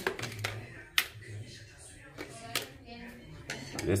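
A few sharp handling clicks and taps, a second or more apart, from hands working at the wiring and sheet-metal chassis of an opened microwave oven.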